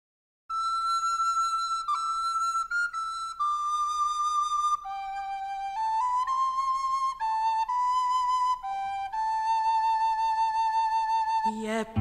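Solo flute playing a slow melody, one sustained note at a time with vibrato. Just before the end the band comes in and a woman's voice starts to sing.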